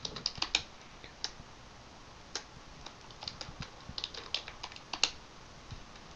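Computer keyboard typing: irregular, fairly quiet keystroke clicks in short runs with pauses between them.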